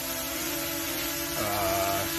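DJI Mini SE quadcopter hovering low on Master Airscrew Stealth propellers, a steady whine of its motors and props. The pitch shifts about one and a half seconds in as the drone moves.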